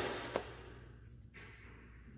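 Tarot cards being handled in the hands: a short sharp card click about a third of a second in, then a brief hissing slide of cards past the middle.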